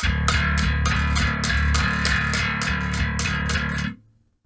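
Electric bass guitar playing its open low string, detuned from E down to D, picked repeatedly at about four notes a second before stopping just before the end. The slacker tension on the heavy-gauge string gives a hint of how a lighter gauge would sound, with more clarity, some grunt and a gurgle to it.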